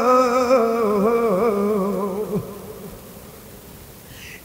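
A man's voice holding one long wavering sung note in the melodic chant of a Bangla waz sermon, fading out about two and a half seconds in.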